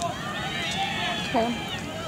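High-pitched shouting voices carrying across a soccer pitch, sliding up and down in pitch, with a single spoken "okay" close to the microphone near the end.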